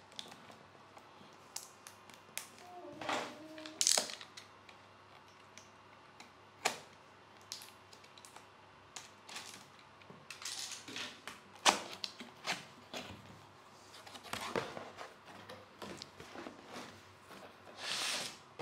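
A cardboard shipping box being opened by hand: scattered taps and knocks, a brief squeak about three seconds in, and stretches of cardboard scraping and rustling as the flaps are worked open, with one sharp knock near the middle.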